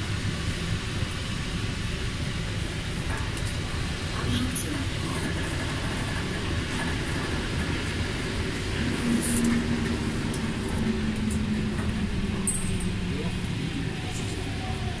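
Metro train running, a steady rumble heard from inside the carriage, with a faint low hum coming up about nine seconds in and fading near the end.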